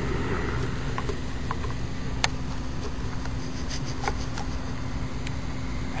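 Steady low rumble and hiss with a constant faint hum, broken by a few light clicks.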